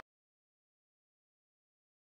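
Silence: the audio drops out completely.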